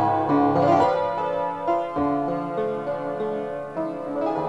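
Upright piano played, a melody moving over sustained lower notes.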